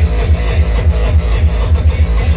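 Uptempo hardcore played loud over a festival sound system, driven by a fast, heavy kick drum at about five beats a second.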